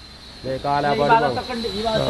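A man's voice talking, starting about half a second in, over a faint steady high-pitched hiss.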